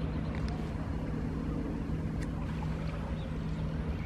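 A steady low motor hum holding one constant pitch, over an even background hiss.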